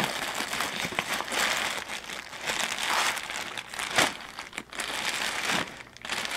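Packaging crinkling and rustling as a shirt is dug out of a swag bag, in irregular swells with a sharp crackle about four seconds in.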